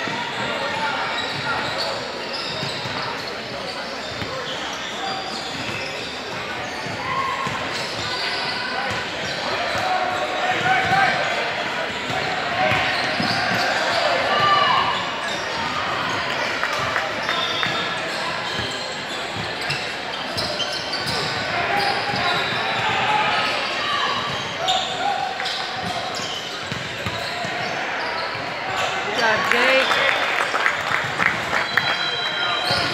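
Basketballs bouncing on a hardwood gym floor amid indistinct, echoing voices of players and spectators in a large sports hall, with a run of quick bounces near the end.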